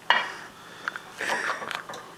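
Clinks and knocks of a ceramic plate and a glass jar as a piece of pickled pig's foot is set on the plate and fingers reach back into the jar: one sharp knock right at the start, then a few lighter clicks.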